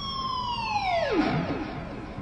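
Electric guitar dive bomb: a ringing natural harmonic pulled down with the whammy bar. The pitch sinks slowly at first, then drops steeply to a low note about a second and a half in, and fades.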